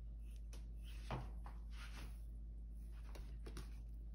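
Kitchen knife scoring the skin of a raw whole duck: several short slicing strokes, the loudest about a second in, over a steady low hum.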